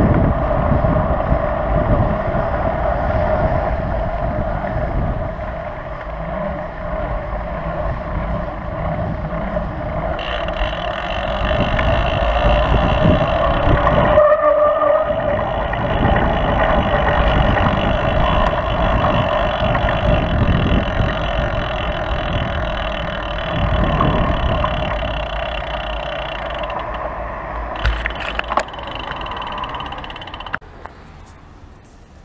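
Steady wind rush and tyre rumble on a bike-mounted action camera's microphone as a mountain bike rolls along a paved road. Near the end the noise eases and there are a few sharp clicks as the bike slows.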